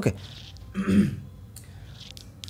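A man briefly clearing his throat once, about three quarters of a second in, in a pause between spoken sentences.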